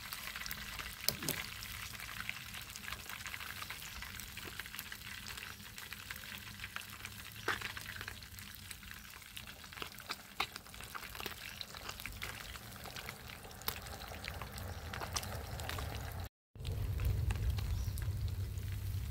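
Food frying in oil in a pan on a portable gas camping stove, a steady sizzle with many scattered crackles. Near the end the sound cuts out for a moment and a low rumble comes in.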